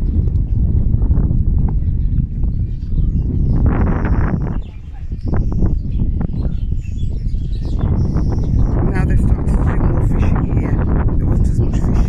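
Wind buffeting the microphone in a steady low rumble by the water, with people's voices in the background.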